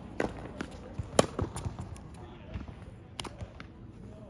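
Tennis ball knocks on a hard court: several sharp, irregular knocks, the loudest a little over a second in and another about three seconds in.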